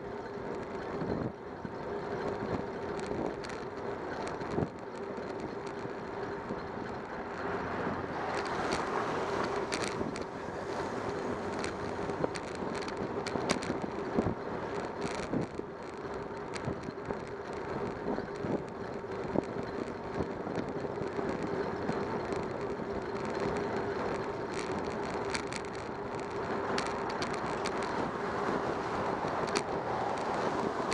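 Wind and road noise from a camera mounted on a moving bicycle. A steady hum runs under frequent small clicks and rattles as it rolls over the pavement.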